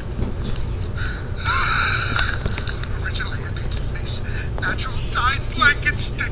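Film soundtrack played on a television and picked up from the room: short voice sounds without clear words, one held cry about a second and a half in and a few rising and falling utterances near the end, over a steady low hum.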